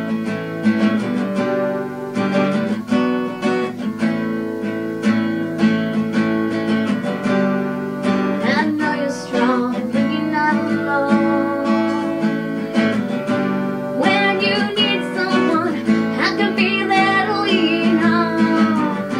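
Cutaway acoustic guitar strummed in a steady rhythm, with a woman's singing voice coming in over it about halfway through.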